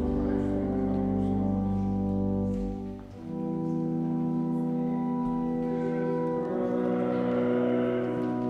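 Church organ playing slow, sustained chords, with a change of chord about three seconds in, ringing in a large sanctuary.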